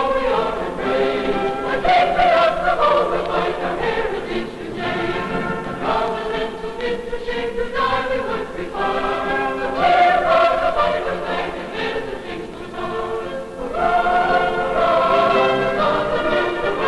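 Choir singing in several parts as a film soundtrack, held notes changing every second or two.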